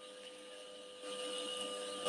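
Faint steady background whine and hiss, like a machine or electrical hum, a little louder from about a second in.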